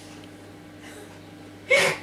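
A woman's short, sharp gasp near the end, loud against an otherwise quiet background.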